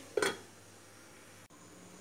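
An aluminium pan lid set onto a frying pan with one short clink, followed by faint room hiss.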